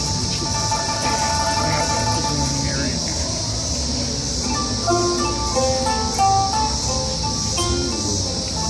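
Oud and pipa played together live, with plucked notes ringing out and then a quick run of short notes from about halfway. A steady high-pitched cicada drone sits underneath throughout.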